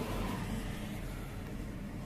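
Steady car noise heard from inside a car on the freeway: a low engine and road hum under an even hiss.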